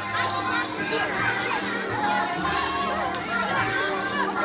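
Many children chattering and calling out in a school cafeteria, with music playing underneath.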